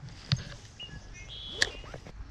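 A spinning rod and reel being cast: a sharp click about a third of a second in and a louder one about three quarters of the way through, with short high chirps from birds around the middle.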